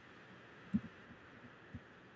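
A few short, low, dull thumps over a steady faint hiss. The strongest comes about three quarters of a second in with a weaker one just after, and another comes near the end.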